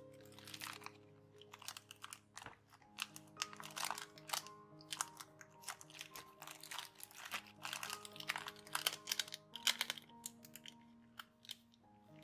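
Paper and tracing-paper pockets of a handmade sticker folder crinkling and rustling in irregular bursts as hands flip and press them, over soft background music.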